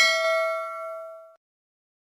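Notification-bell chime sound effect: one bright ding that rings on and fades out, stopping after about a second and a half.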